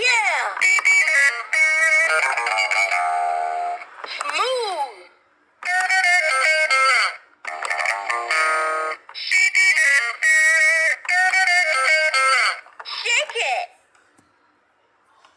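Backyardigans musical toy guitar playing a quick series of short electronic music and sound clips from its small built-in speaker as its character buttons are pressed. About a dozen bursts follow one another with brief gaps, some with swooping rises and falls in pitch.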